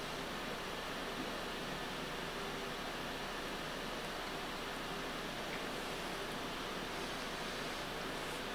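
Steady, even background hiss with no distinct events: the recording's room tone.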